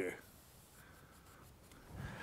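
Faint scratching of a paintbrush stroking paint across canvas, just after a spoken word ends at the start.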